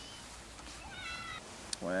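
A single short, high-pitched animal call about a second in, held on one pitch for under half a second, heard faintly over the outdoor background.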